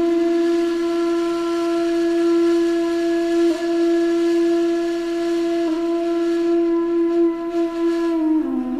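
A wind instrument holds one long, steady note, with two brief breaks about three and a half and six seconds in.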